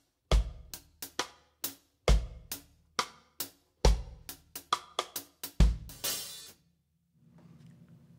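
Drum kit playing a reggae one-drop groove. The bass drum lands with a dampened cross-stick rim click on beat three, four bars at about one every 1.75 seconds. A brighter cross-stick click on beat one and a loosely shuffled, skippy hi-hat pattern fill the bars between, and the groove ends with a short cymbal wash about six seconds in.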